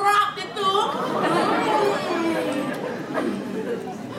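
Several people talking over one another in a large hall, after one clear voice in the first second.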